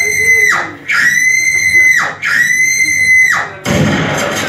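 Three long, high, steady tones, each lasting about a second and sliding down in pitch at its end, followed by a short low thump near the end.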